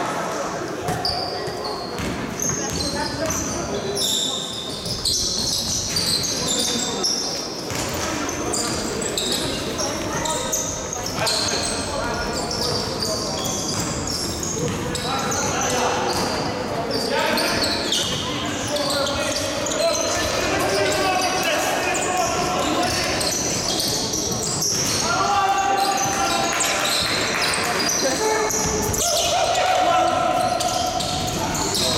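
Basketball game in a large gym: a basketball bouncing on the court, short high sneaker squeaks, and players calling out, all echoing in the hall. The calls grow more frequent in the second half.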